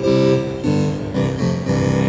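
Kanawha Long Division divide-down tone module in Eurorack, played from a keyboard: a run of steady, held organ-style chords that change about four times.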